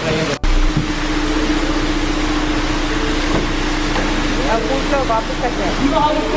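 Steady electric motor hum of a Ford Mustang convertible's power soft top folding down, stopping shortly before the end, over wind rumble on the microphone.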